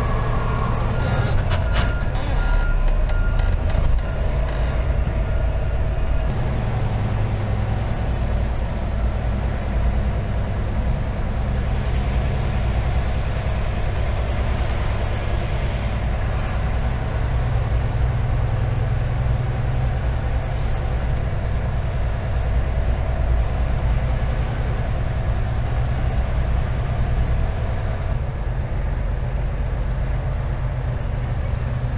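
Semi-truck tractor's diesel engine heard from inside the cab, a steady low drone as the truck drives slowly through a yard.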